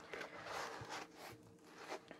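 Faint rustling and scraping of a rolled poured-glue diamond-painting canvas being handled and rolled by hand against a tabletop, in a few soft bursts.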